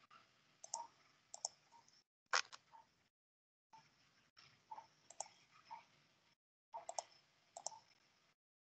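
Faint computer keyboard and mouse clicks in short clusters, picked up by a video-call microphone. The call's noise suppression cuts the sound off abruptly to dead silence several times.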